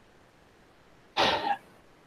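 A man coughs once, briefly, a little over a second in, against quiet room tone.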